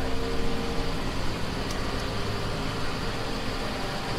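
Doosan excavator's diesel engine running steadily as the machine works.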